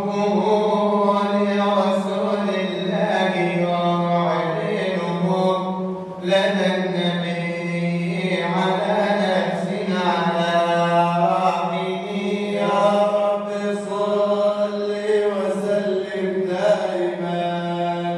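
Solo male voice chanting Arabic madih nabawi (praise poetry for the Prophet) in long ornamented melodic lines, over a steady low drone.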